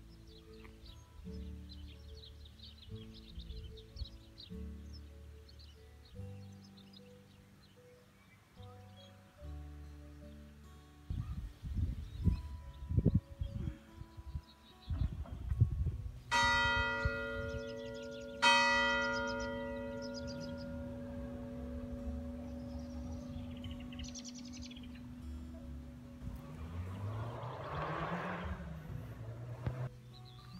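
Church tower bell striking twice, about two seconds apart, each stroke ringing on and fading slowly. Just before the strokes come a few seconds of loud, low rumbling bumps.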